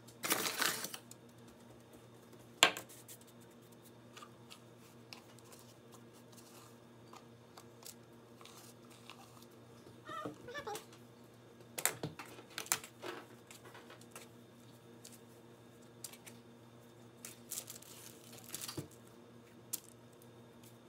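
Scattered light clicks, knocks and scrapes of a fork, measuring cup and hands working floured dough on a metal baking sheet, with a sharp knock about two and a half seconds in. A faint steady hum runs underneath.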